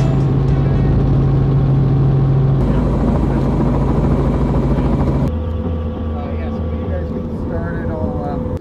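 Helicopter in flight heard from inside the cabin: loud, steady engine and rotor noise with a low drone. About five seconds in the sound changes abruptly, losing much of its hiss and settling into a thinner hum with a steady higher tone.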